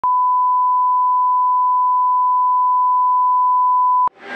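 A steady, loud, pure-pitched test tone: the broadcast line-up tone that accompanies television colour bars, held on one unchanging pitch.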